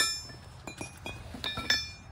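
Steel trailer-hitch parts of a tri-ball mount clinking against each other: a sharp clink that rings on at the start, and two more ringing clinks near the end.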